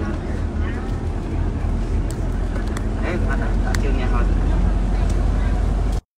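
Low, steady rumble of a bus's engine and road noise heard from inside the cabin while driving, growing a little louder toward the end.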